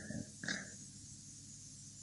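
Pause between sentences: faint room tone with a steady low hum, and one brief faint sound about half a second in.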